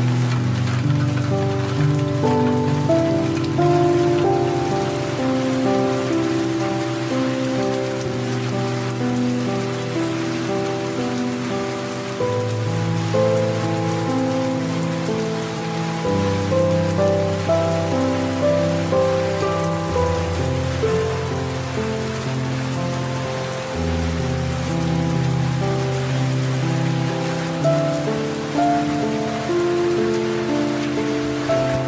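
Steady rain falling, with soft, slow music over it: gentle held notes above low bass notes that change every few seconds.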